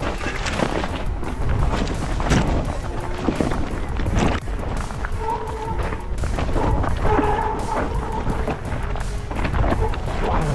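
Music over on-bike action-camera sound of a mountain bike descending a loose, rocky technical trail: heavy wind rumble on the microphone with scattered knocks and rattles from the bike over the rocks.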